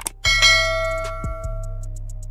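Bell chime sound effect of a subscribe-button animation. A click, then one bell strike about a quarter second in that rings and fades away over about a second and a half, over background music with a steady beat.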